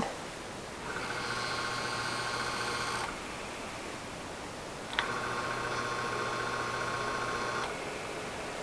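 Zoeller M53-D 1/3 hp submersible sump pump motor running dry on the bench in two short runs, about two and three seconds long, switched on and off by its float switch. It gives a steady hum with a high whine, and the second run starts with a click.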